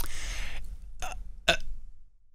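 A man's hesitation before answering: a sharp mouth click at the very start, a quick in-breath, then two short "uh" sounds about a second in.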